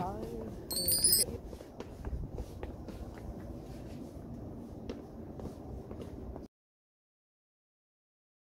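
A brief, high metallic ding about a second in, over a steady low outdoor background rumble with faint clicks; the sound cuts off abruptly about two-thirds of the way through, leaving silence.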